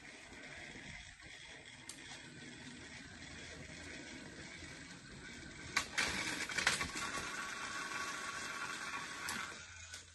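Motorized toy train engines running along plastic track: a steady running noise that grows louder, with clicks and rattles, from about six seconds in, and stops just before the end.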